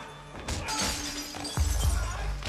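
A shattering crash over film score music, with a heavy low thump near the end.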